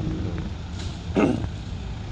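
Low steady rumble of car engines, with a brief louder sound a little over a second in.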